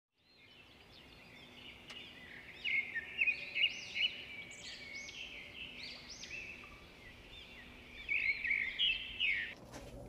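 Birds chirping and twittering in quick runs of short up-and-down notes, fading in from silence in the first second or two and growing busier around three to four seconds in and again near the end.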